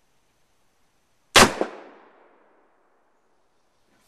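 A percussion cap fired on its own in a black powder revolver's chamber, with no powder or ball behind it: one sharp crack about a second and a half in, with a short echoing tail.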